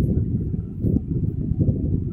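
A steady, rough low rumble with no clear pitch.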